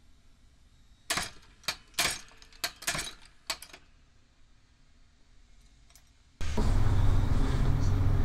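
A quick run of about seven sharp metallic clicks and clinks as speed hooks are handled and set at a hand-operated hook-setting press. At about six seconds in the sound jumps suddenly to a louder, steady room noise.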